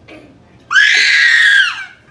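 A single loud, high-pitched scream lasting about a second, starting a little under a second in, rising sharply at the start and falling off at the end.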